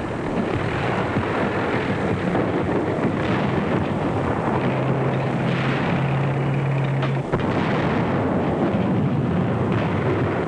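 Continuous battle noise: a dense rumble of explosions and gunfire, with a low steady drone for a couple of seconds around the middle.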